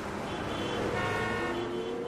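Outro sound effect for the podcast's animated logo: several sustained electronic tones held together over a faint low hum, with a lower tone gliding slightly upward near the end.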